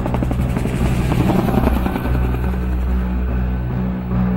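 Helicopter rotor chopping in quick, even beats, strongest in the first two seconds, over soundtrack music with sustained low notes.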